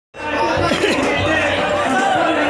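Crowd of people talking over one another, with music playing in the background.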